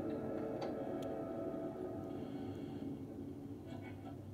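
Television soundtrack heard across a room: a low, steady drone with held tones that slowly fades, and a few faint, isolated ticks.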